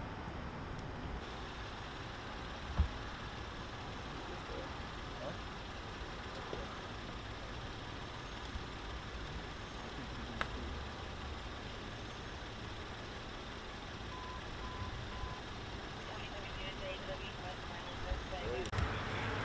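Steady outdoor street ambience: a low rumble of traffic and idling vehicles, with faint distant voices. A single dull thump comes about three seconds in, a sharp click about ten seconds in, and a few short faint beeps about two-thirds of the way through.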